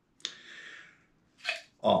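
A soft, airy rush of breath lasting under a second, followed by a brief sharp click just before a man starts to speak.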